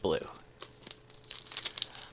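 Foil wrapper of a Magic: The Gathering Kaldheim booster pack crinkling as it is picked up and handled, a quick run of small crackles in the second half.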